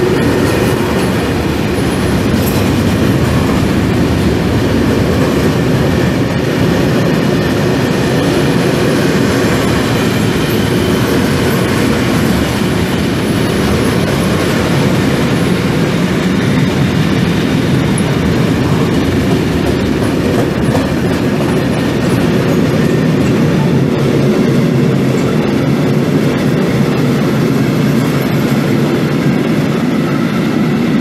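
Long freight train of covered sliding-wall wagons rolling past close by: a loud, steady rumble of steel wheels on rail with wheel clatter.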